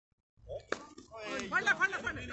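A single sharp knock about three quarters of a second in, a cricket bat striking a taped tennis ball, followed by men's voices calling out.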